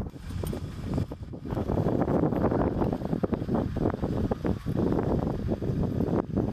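Wind buffeting the microphone: a loud, irregular rumble that swells about a second and a half in.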